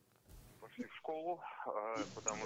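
A short silence, then faint male speech from an audio recording being played back.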